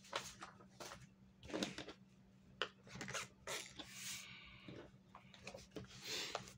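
Faint handling sounds of paper and a book: scattered light taps and clicks with a longer soft rustle about four seconds in, as a drawing book is brought over a clipboard with a blank sheet. A faint steady electrical hum sits underneath.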